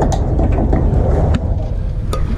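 Outboard motor idling: a steady low rumble, with a few short knocks or splashes over it.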